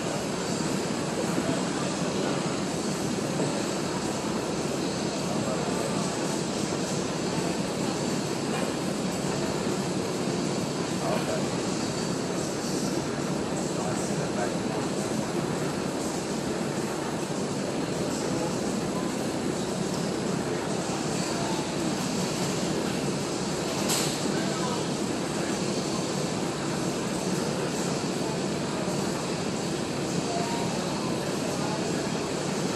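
Steady, even rushing background noise, like machinery or ventilation running in a large room, unchanged in level throughout, with a single sharp click about 24 seconds in.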